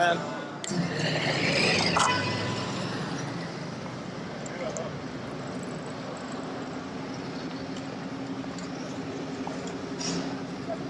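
Busy city street ambience: passers-by talking and a sharp click in the first couple of seconds, then steady traffic noise with a low, even engine hum from a nearby vehicle.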